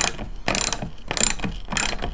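Hand socket ratchet wrench clicking in short repeated bursts, about three strokes in two seconds, as it tightens a bolt on a roof-rack bracket.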